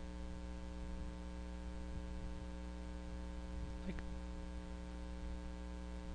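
Steady electrical mains hum in the recording, with a faint click about four seconds in.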